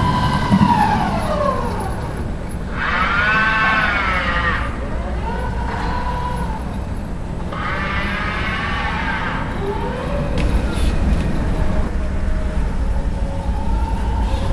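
Electric motor whine of an automated guided vehicle, over a steady low hum. The pitch falls near the start, then twice rises and falls again as the motors speed up and slow down.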